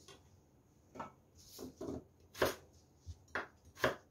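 Chef's knife cutting a peeled potato into chunky cubes on a wooden cutting board: about six separate knocks of the blade on the board at an uneven pace, the loudest about two and a half seconds in and just before the end.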